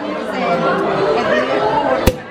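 Overlapping chatter of several voices talking at once in a large room.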